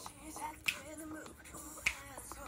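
Two sharp finger snaps about a second apart, part of a steady beat, over faint music.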